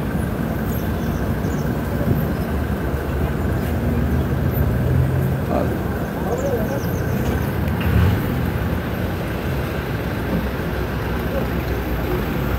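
Busy street traffic, with the engines of passenger minibuses idling and running close by as a steady low rumble, and faint voices of passers-by.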